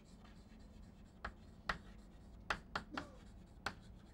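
Chalk writing on a blackboard: a faint run of short taps and scrapes, about seven quick strokes, most of them in the second half.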